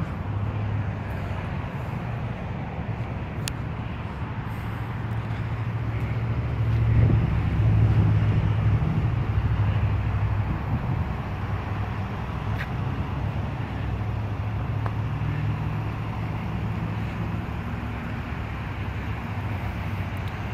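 Steady low hum of motor-vehicle traffic, swelling louder about seven seconds in and easing off again over the next few seconds.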